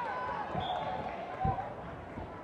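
Two dull thuds of contact in karate sparring, about a second apart, the second louder, under raised voices shouting near the start.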